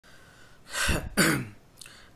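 A man clears his throat in two short goes about half a second apart, the second one voiced and falling in pitch.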